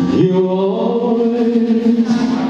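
Live band playing a slow pop ballad, a male singer sliding up into one long held note about a quarter second in over keyboard and bass.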